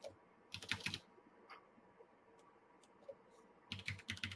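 Computer keyboard keys being pressed in two short bursts of rapid clicks, one about half a second in and another near the end, with a few faint single ticks between.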